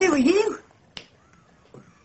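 A woman's short spoken exclamation, its pitch dipping and rising again, followed about a second in by a single sharp click.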